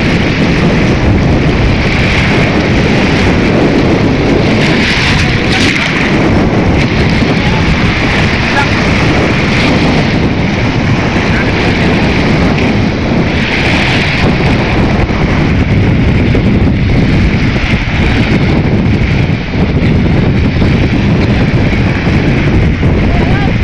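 Steady wind buffeting the microphone, with small waves washing in over a pebble shore in a few swells of hiss.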